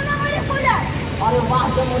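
A voice speaking, with a steady low rumble of street background noise underneath.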